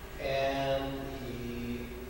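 A man's voice holding one long filler vowel, an 'uhh' hesitation, at a nearly level pitch that drops slightly near the end.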